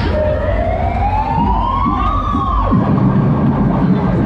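Siren wail on a caterpillar fairground ride: a rising tone that climbs for about two seconds, then drops off sharply, over a steady low rumble.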